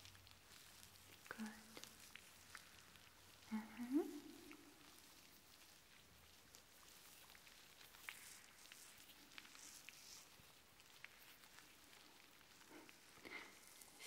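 Very quiet, close-up hand sounds: fingers rustling and brushing with scattered light crackles, as hands work through hair in a mimed detangling scalp massage.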